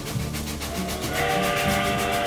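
Locomotive whistle sounding one long, steady chord that starts about a second in, over background music.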